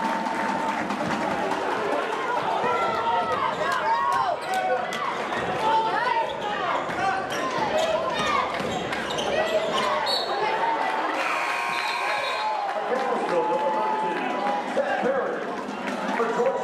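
Live basketball play on a hardwood gym floor: sneakers squeaking in short chirps and the ball bouncing, over steady crowd chatter in a large hall.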